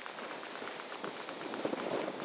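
Quiet footsteps of a person walking on a tarmac path, a steady run of soft steps.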